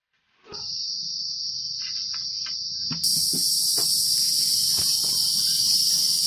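Loud, steady, high-pitched insect chirring that sets in abruptly, with a higher hissing layer joining about halfway. Faint scattered clicks and knocks sit underneath.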